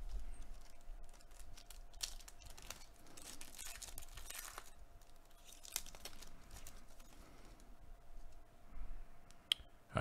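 Foil wrapper of a Panini Contenders Football trading card pack being torn open and crinkled by gloved hands, loudest in a few bursts about two to four and a half seconds in, then quieter handling clicks.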